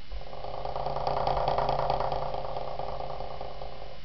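Bagpipes sounding a held note with steady drones, swelling a little after about a second, with a rapid snare drum roll over it.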